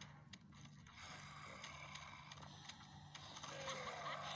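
Faint scattered clicks and light rustling from a plastic action figure being handled and moved on a shag carpet, over a low steady hum.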